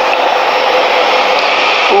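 A steady, loud rushing hiss like white noise, cutting off just before the end.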